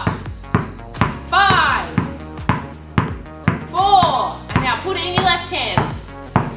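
A basketball being dribbled on the floor, with sharp bounces about twice a second, over background music with a steady bass and a vocal melody.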